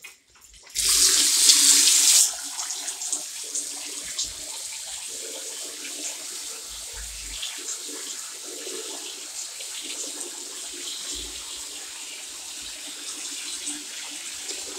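Water running from a chrome lever tap into a white ceramic pedestal sink: a loud gush for about a second and a half, starting about a second in, then a steady, softer flow.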